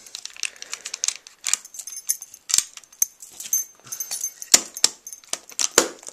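Irregular clicks, taps and light rattles from a Chinon 35 mm film camera and its film canister being handled as the rewound canister is lifted out of the open camera back.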